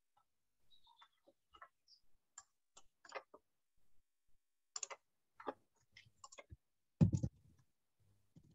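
Scattered faint clicks and taps picked up by a video-call microphone, with one louder thump about seven seconds in.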